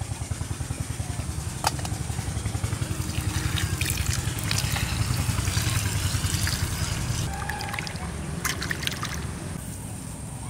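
Water poured in a stream onto cut fish pieces in a stainless steel bowl, trickling and splashing as the pieces are washed and rubbed by hand, with a fast low fluttering under it. The splashing is loudest in the middle, and there are a couple of sharp clicks.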